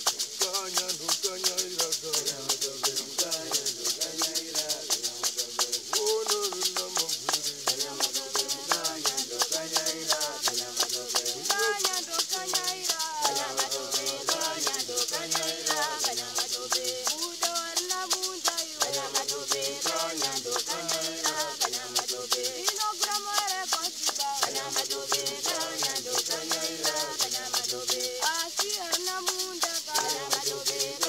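Shona hosho gourd rattles shaken in a steady, even rhythm over an mbira played inside its gourd resonator, cycling a repeating melodic pattern, with men singing along.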